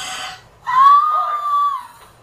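A woman's high-pitched excited squeal: the tail of a falling squeal, then one longer held squeal of about a second.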